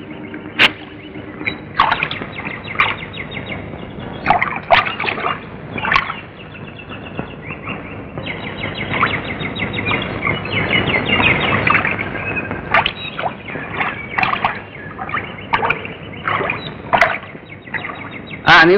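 Birds chirping in short, scattered calls, thickest in the middle, over a steady soundtrack hiss.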